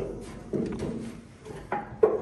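Quiet metal handling: a light knock about half a second in and a sharper click near the end, as a steel lifting chain and its hook and shackle are handled on a steel hull plate.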